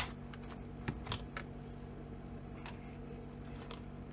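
A handheld craft paper punch snapping down once through cardstock, a single sharp click, followed about a second later by a few faint clicks as the punch and card are handled.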